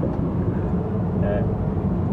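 Steady low roar of an airliner in flight, engine and airflow noise heard inside the aircraft lavatory.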